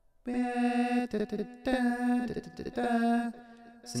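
A man's voice singing three held notes a cappella, all on one unwavering pitch, pitch-corrected by auto-tune so each note sits dead flat.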